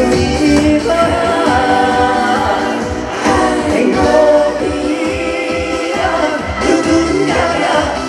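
A male singer sings a Korean pop song live into a handheld microphone over a backing track with a steady beat, all played through a stage sound system.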